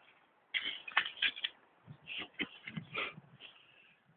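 Shovel digging into earth: a run of irregular scrapes and crunches starting about half a second in.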